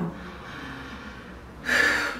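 A woman takes a sharp, audible breath in near the end, after a short pause with only faint room noise.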